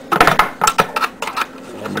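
Metal clinking and rattling, a quick cluster of sharp clicks in the first second that then thins out: a wrench and nuts on the bolts of a small homemade press being loosened and taken off.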